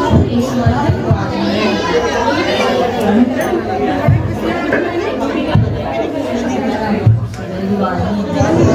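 Several people talking over one another in a room, with a few irregular low thumps.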